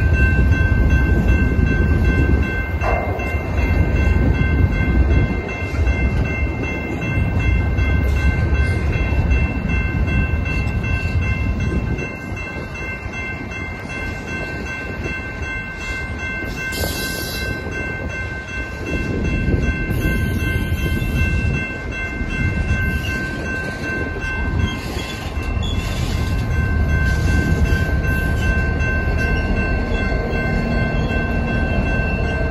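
Freight train cars rolling past at close range, a steady rolling noise of wheels on rail that swells and eases as the cars go by, with a thin steady high-pitched ringing tone throughout and a brief hiss about halfway through.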